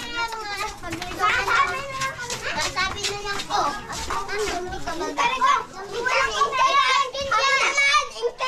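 A group of young children chattering and calling out close around, several high voices overlapping without a break, loudest near the end.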